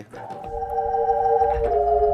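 Hammond B3 organ holding a sustained chord that swells in, with a low bass note underneath. About one and a half seconds in, the upper voices move to a new chord: a seventh chord brought in to jazz up the harmony.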